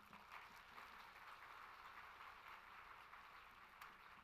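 Near silence with a faint, steady hiss.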